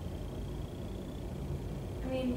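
Room tone during a pause: a steady low hum with a faint thin high tone that stops about a second in.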